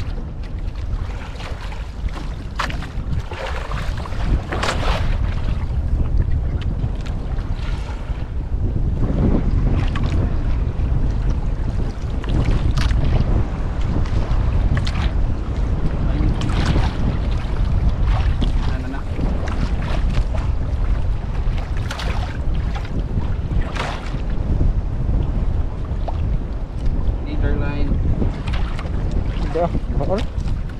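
Wind buffeting the microphone in irregular gusts over a steady low rumble, on a small outrigger boat at sea.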